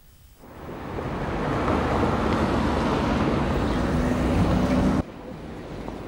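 A loud, steady rushing noise with no clear pitch, like wind or surf, swelling in over about a second and then cutting off abruptly about five seconds in. It is the sound effect under a section title card. A quieter, faint background hum follows.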